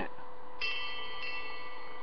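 Mobile phone text-message alert: a chime of several steady high tones, starting about half a second in and ringing for over a second.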